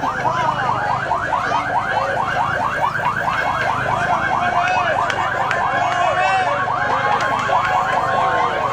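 Electronic sirens on convoy vehicles, warbling rapidly up and down about five times a second, with several overlapping.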